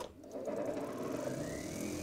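Homemade spark-plug and bulb tester switched on with a click, its washing-machine motor spinning a magnetic plate and running up to speed with a rising whine over a steady hum.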